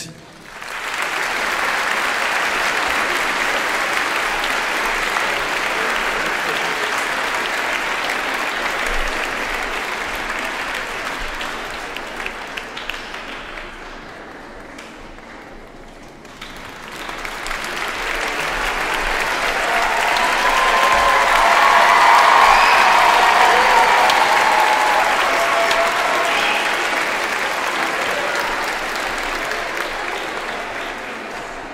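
Large audience applauding: a long round of clapping that dies down about halfway through, then swells up again to its loudest a little past the middle before easing off.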